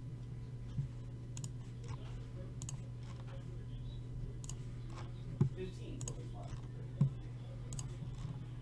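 Scattered light clicks of a computer mouse and keyboard over a steady low hum, with a few dull knocks, the loudest about five and seven seconds in.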